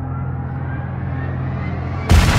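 Trailer sound design: a steady low drone under a thin tone that rises slowly in pitch, building tension.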